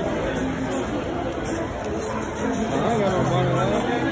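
People chattering in a busy public place, with a few short hisses of an aerosol spray-paint can being sprayed.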